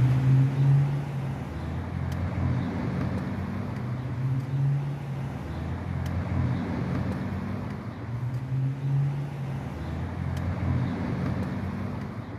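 A car driving slowly, with the low hum of its engine and steady road noise heard from inside the car.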